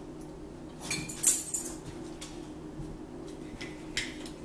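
A few sharp clicks and clinks of a fork on ceramic bowls and a plastic pill bottle being handled at the table, the loudest about a second in, over a steady low hum.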